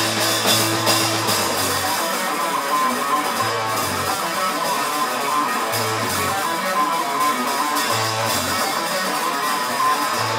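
Live rock band playing an instrumental passage on electric guitars and bass guitar, with a low bass note coming back about every two seconds.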